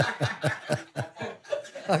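A man laughing in quick, repeated chuckles, several a second.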